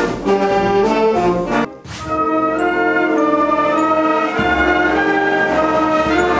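Concert wind band playing, with brass and saxophones in a moving passage. The music breaks off briefly about two seconds in, then comes back with long held chords.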